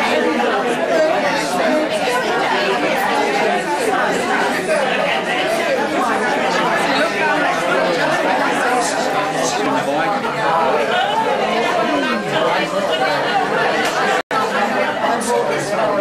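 Crowd chatter: many people talking at once in overlapping conversations. The sound cuts out for an instant about fourteen seconds in.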